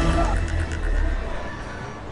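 Bus engine rumbling as a horn sounds briefly at the start; the sound then dies down.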